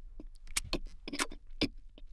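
A run of sharp, irregular clicks and rattles, several in two seconds, some in quick pairs.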